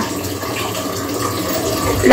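A steady rushing noise with a faint low hum underneath, unchanging throughout.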